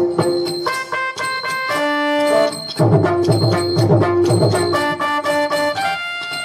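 Instrumental music accompanying a Tamil stage drama: a melody instrument plays held notes while hand-drum beats drop out just under a second in and come back near the middle.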